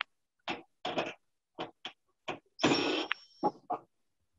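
Cordless drill-driver run in short pulses of the trigger on the screws of the range's lower front panel: about seven brief bursts, with one longer run with a steady whine about three seconds in.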